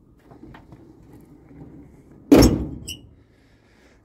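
The hood of a 1968 Dodge Charger being shut, with faint handling noise and small clicks first, then one loud slam a little past halfway that rings briefly as it dies away.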